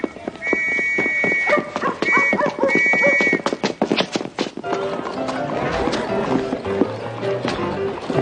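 Horses' hooves clip-clopping on a hard street, with a horse whinnying and a high whistle sounding in several long blasts. Music with held notes comes in about halfway.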